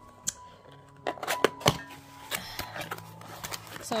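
A small cardboard box and its packaging being handled and opened by hand: a scatter of sharp taps and clicks, the loudest about one and a half seconds in.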